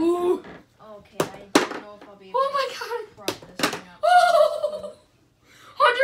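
Balls striking a toy Skee-Ball board: sharp knocks in quick pairs, once about a second in and again about three seconds in, between short excited vocal exclamations.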